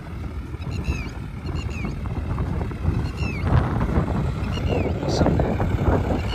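Farmtrac 60 tractor's diesel engine working under load pulling a disc harrow, heard through heavy wind rumble on the microphone. Small birds chirp repeatedly with short falling notes.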